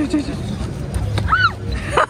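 A person laughing, with one brief high-pitched squeal that rises and falls about halfway through, over steady street noise and a low rumble.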